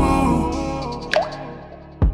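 Slowed-down, reverb-heavy R&B instrumental: a held chord fading away, with quick blips that fall in pitch at the start, about a second in, and again at the end.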